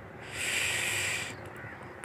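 A bird's single harsh call, about a second long.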